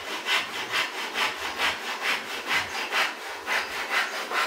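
Steady, rhythmic rasping strokes of something worked back and forth by hand, about two strokes a second.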